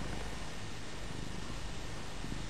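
Maine Coon cat purring steadily as she is brushed and enjoying it.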